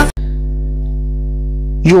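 A steady electrical hum, made of a low tone with a stack of evenly spaced overtones, like mains hum picked up in the recording. A man's voice starts near the end.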